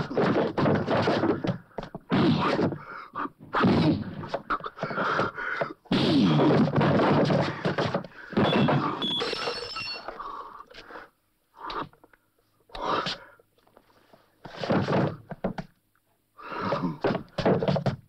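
Film fistfight sound effects: a run of punches and heavy thuds landing in quick succession, thinning out to scattered blows in the second half.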